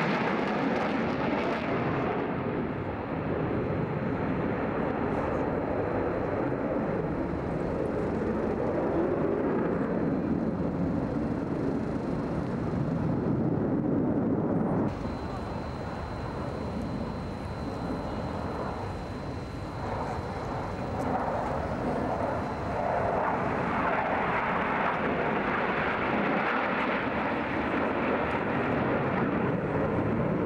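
Jet noise from a formation of MiG-29 Fulcrum fighters, each powered by two Klimov RD-33 turbofans, flying a display overhead: a continuous rushing rumble with a sweeping pass in the first couple of seconds. It drops somewhat about halfway through and builds again near the end.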